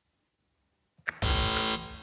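Near silence, then about a second in a quiz-show buzzer sounds once, a loud steady electronic tone lasting about half a second that stops abruptly: a contestant buzzing in to answer.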